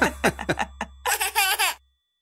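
Giggles and laughter from a baby and young children in short bursts, over a held low note of children's music. Both cut off suddenly near the end.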